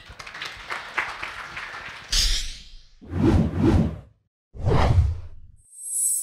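Logo-animation sound effects: a bright high swish about two seconds in, then two deep whooshes with a short dead gap between them, ending in a high shimmer. Before them there is only faint room noise.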